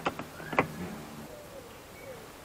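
Mercedes W203 rear door lock and interior handle being worked: a few sharp clicks, the loudest about half a second in, over a low mechanical hum that fades out within the first second.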